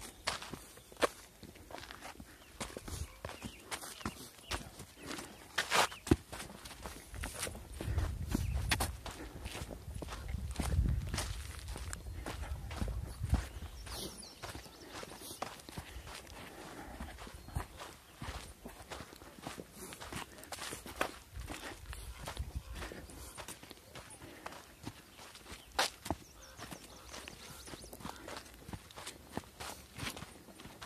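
Footsteps on a sandy, rocky trail at a walking pace: a steady run of irregular short scuffs and clicks. A low rumble comes in for a few seconds near the middle.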